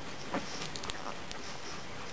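Nine-day-old German shepherd puppies suckling at their mother: a few faint, quick wet clicks, the loudest about a third of a second in, over a steady hiss.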